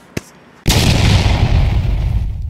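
A short click, then about two-thirds of a second in a sudden loud boom, an explosion sound effect with a deep rumble that slowly dies away.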